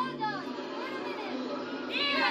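Children's voices: scattered calls and chatter from a group of school students, with no single voice standing out.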